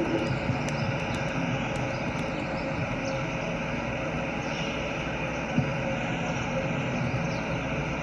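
Steady low outdoor background rumble, with one sharp knock about five and a half seconds in.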